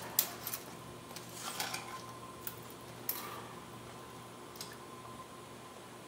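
A few light clicks and rattles from a steel tape measure and tools being handled while a measurement is taken, over a steady faint shop hum.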